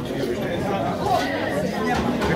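Chatter of a small group of people, several voices talking over each other.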